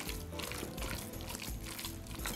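Background music over the wet squishing of hands kneading raw minced meat in a glass bowl.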